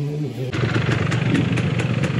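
Two-stroke dirt bike engine running nearby, a rapid steady pulsing that starts abruptly about half a second in.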